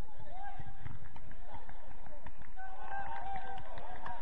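Players shouting and calling to each other across a football pitch, voices distant and indistinct, over running footfalls and short thuds on the artificial turf.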